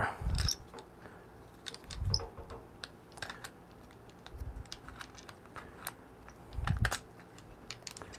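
Scattered light clicks and a few soft low thumps from moving and handling things while the camera is carried about; no grinder or machine is running.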